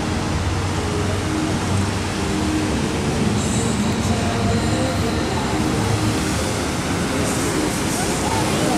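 Steady rushing hiss of the Bellagio fountains' many water jets spraying into the air and falling back onto the lake.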